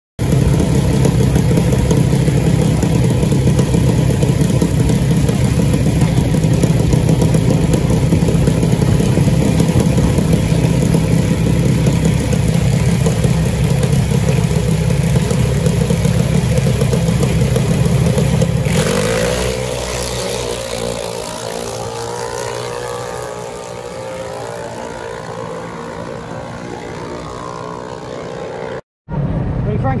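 Junior dragster's single-cylinder engine running loud and steady on the start line, then at about 19 seconds launching and accelerating away, its sound sweeping up in pitch and fading as it goes down the track.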